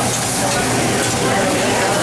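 Steak and sliced mushrooms sizzling on a hot teppanyaki iron griddle: a steady frying hiss.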